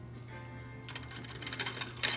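Metal chain on a cockatoo's wooden bridge rattling and clinking as the bird shakes it with its beak, the small ticks quickening and growing louder in the second half. Faint steady tones run underneath.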